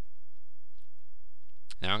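A pause holding only a low, steady hum, with one faint click a little under a second in. A man's voice starts near the end.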